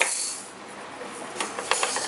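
A toy shaker gives one sharp shake, a rattling hiss that fades over about half a second. A second and a half in come a few light taps on a small toy drum.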